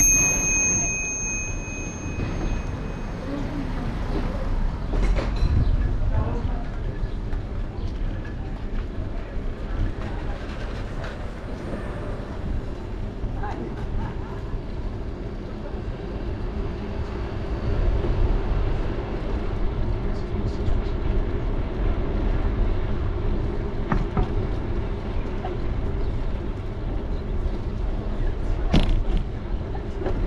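Wind rushing over a GoPro microphone and bicycle tyres rolling on asphalt during a street ride, with indistinct voices of passersby. A short high-pitched ring sounds right at the start.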